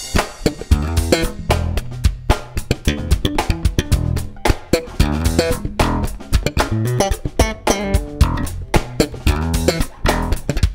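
Upbeat, funky instrumental music: bass guitar and guitar over a drum beat.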